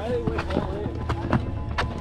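Running footsteps slapping on a rubberised track, roughly three or four quick steps a second, with voices chattering in the background.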